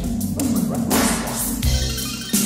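Bass-boosted R&B song, instrumental stretch between vocal lines: a deep, heavy bass line under a few sharp percussion hits.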